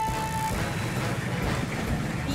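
The engine of a cartoon amphibious rescue vehicle running as it drives through river water, a low steady rumble. A held note of background music fades out in the first half second.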